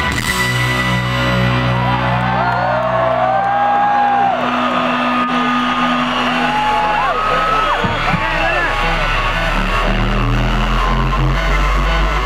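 Live rock band holding low, sustained chords, with the crowd whooping and cheering over the music.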